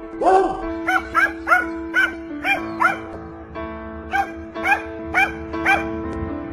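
A small dog barking over and over in short barks, about a dozen in quick succession with a brief pause in the middle, while it faces off against a lizard. Steady background music runs underneath.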